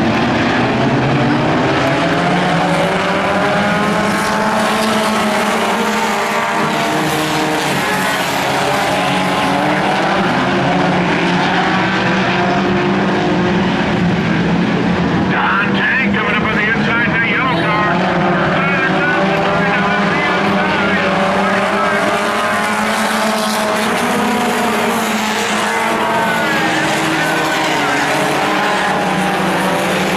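Several four-cylinder sport compact race car engines running together at once, their pitches rising and falling as the cars go around the dirt oval.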